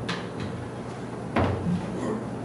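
A sharp knock about one and a half seconds in, with a fainter click at the start, as equipment is handled on a desk, over a steady low room hum.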